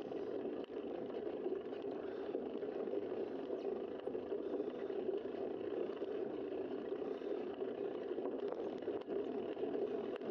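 Steady rush of wind and tyre noise picked up by a bicycle-mounted camera while riding along a paved street.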